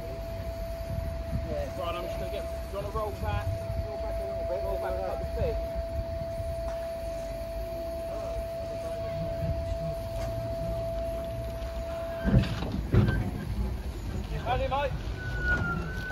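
Around a small narrow-gauge saddle-tank steam locomotive standing at rest: a low rumble with a thin steady tone that cuts off about twelve seconds in, as two loud knocks sound. Men's voices can be heard at a distance, and a higher steady tone starts near the end as steam rises from the engine.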